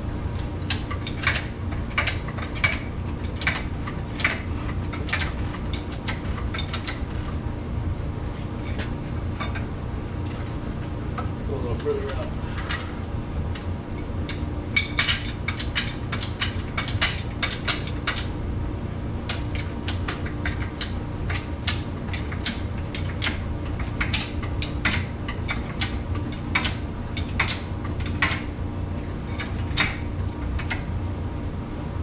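Hydraulic floor jack being pumped by its long handle, giving runs of sharp metallic clicks and clanks as it raises an ATV. A steady low hum runs underneath.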